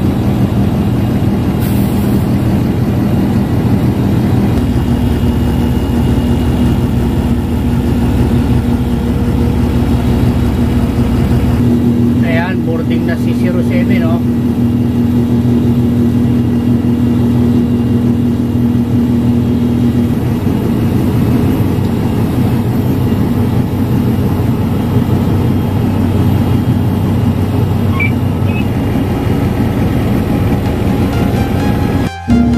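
Airport apron bus engine running, heard from inside the driver's cab, its steady low note shifting a few times, about 4, 12 and 20 seconds in. A brief voice is heard about 12 seconds in.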